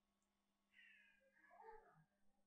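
Near silence, with one faint high-pitched call that starts about two-thirds of a second in, wavers and falls, and fades out just before the end.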